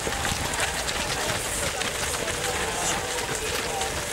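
Many runners' footsteps overlapping in a steady, dense stream as a large pack of race runners passes close by, with indistinct voices mixed in.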